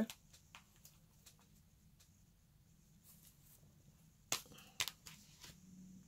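Quiet handling of a paper planner and sticker sheets, with a few faint ticks and two sharper light taps about four and a half seconds in.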